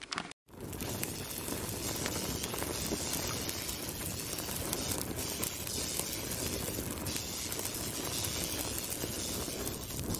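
A brief clatter of clicks, a short gap, then a steady crackling fire sound effect from about half a second in to the end.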